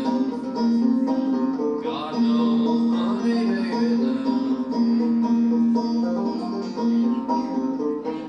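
Solo five-string banjo picked in old-time style, an instrumental passage between sung verses, with one note sounding again and again under the melody.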